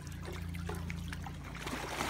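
Pool water trickling and sloshing as a person settles back into a foam pool float, swelling into a splash near the end as her legs kick up water. A steady low hum runs underneath.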